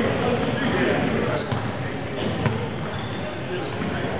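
Voices of people chattering in a gym, with a few basketballs bouncing on the hardwood court.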